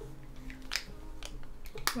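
Soft background music with steady, sustained low notes, and two small sharp clicks, a faint one near the middle and a stronger one just before the end.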